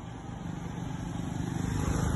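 A low rumble growing steadily louder.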